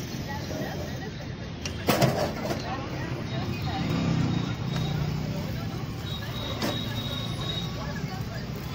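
Busy roadside ambience: road traffic running with indistinct voices in the background. A sharp clack comes about two seconds in, and a fainter one near seven seconds.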